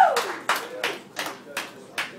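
Small audience applauding with scattered, separate claps, while a single pitched cheer from the crowd falls away in the first moment.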